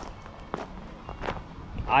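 Footsteps on loose gravel: a few separate steps, about one every three quarters of a second.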